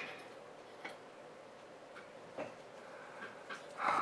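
Small handling noises as a cotton swab is wetted with acetone and brought to the connector pins: a few faint, scattered clicks and taps, then a short rubbing sound just before the end.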